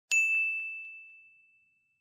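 A single high, bell-like ding sound effect, struck once and ringing out over about a second and a half, with a few faint quick repeats just after the strike.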